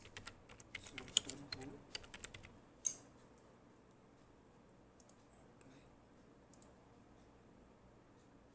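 Computer keyboard being typed on: a quick run of key clicks in the first three seconds, then a few single keystrokes spaced apart.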